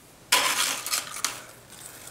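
Crisp rustling and clattering of hands handling tortilla chips over a glass bowl. It starts suddenly a moment in, lasts about a second with a few sharp clicks, then fades.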